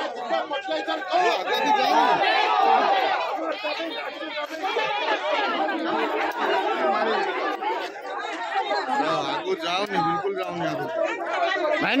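A crowd of villagers talking over one another, many voices at once, in a face-off with police at a barricade. A lower man's voice stands out near the end.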